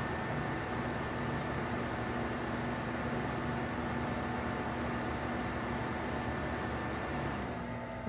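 Several electric fans running on an inverter's output, a steady rush of air with a faint hum. Near the end the sound falls away as the inverter trips from overload at about 280 watts and cuts their power.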